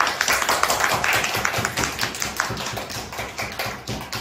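Applause from a small group: many quick, irregular hand claps.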